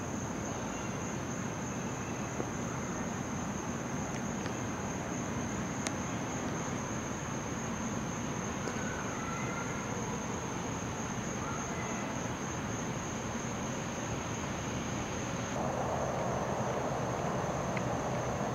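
Steady high-pitched insect chorus of crickets over a background hiss; a broader rush of noise joins in near the end.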